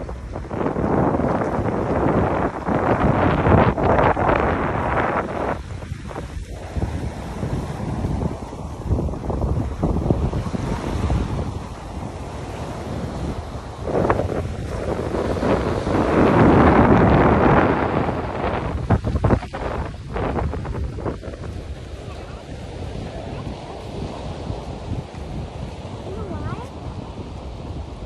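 Wind buffeting the microphone in gusts, loudest a few seconds in and again about two-thirds of the way through, over the wash of small waves on a sandy shore.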